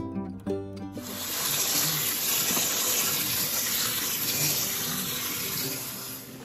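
Guitar background music, then about a second in a kitchen tap starts running water steadily over red grapes in a metal colander as they are rinsed, with faint music under it, until it stops near the end.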